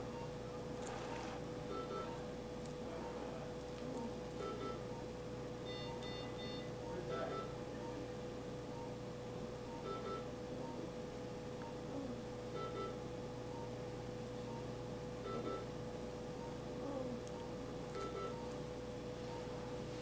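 Faint room sound of an interventional radiology suite. A steady electronic hum runs under soft, regular patient-monitor beeps, about one every three quarters of a second, and a higher paired beep every two to three seconds.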